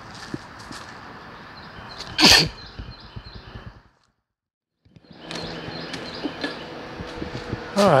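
A faint steady outdoor background with a few small clicks, broken about two seconds in by one short, loud burst of noise. About four seconds in the sound drops out for a second and comes back as a steady low hum in a room.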